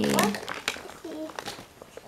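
A thin plastic wrapper crinkling in the hands as it is handled and opened, in short scattered crackles. A voice trails off at the start and there is a brief faint murmur about a second in.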